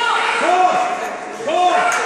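Voices shouting and calling out in an echoing gymnasium during a basketball game, with two short calls about half a second in and near the end.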